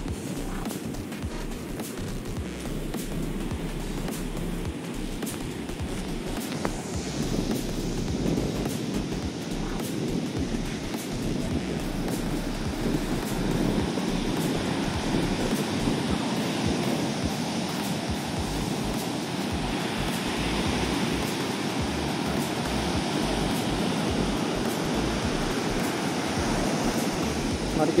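Ocean surf breaking and washing up a sandy beach, a steady rushing noise that grows somewhat louder after the first several seconds.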